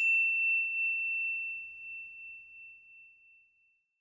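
A single high chime note ringing out and fading away over about three and a half seconds.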